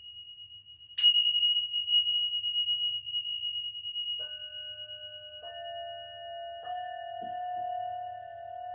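Tibetan singing bowls struck one after another and left to ring. A high bowl rings on and is struck again about a second in; then lower bowls are struck three times, from about four seconds in, their steady tones overlapping and sustaining.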